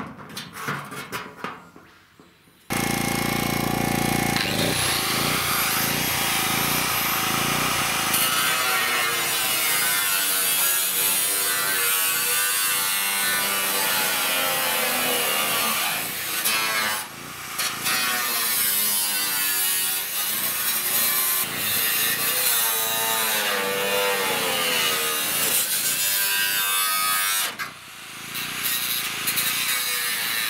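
Angle grinder with a cutting disc slicing through old galvanised corrugated roofing iron. A few light knocks come first, then the grinder starts abruptly about three seconds in and cuts steadily, its pitch wavering as the disc bites. It pauses briefly about halfway and again near the end.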